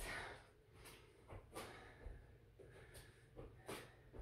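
Near silence: room tone with a few faint, short movement and breathing sounds of a person doing lunges barefoot on a mat, the clearest about one and a half seconds in and near the end.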